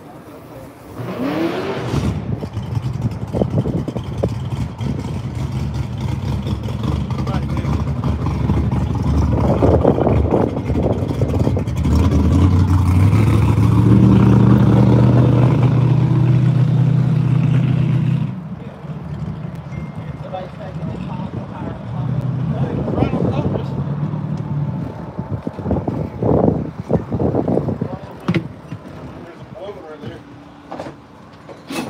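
A car engine running, stepping up to a higher, louder idle about halfway through and then cutting off suddenly; a lower engine sound returns briefly afterwards.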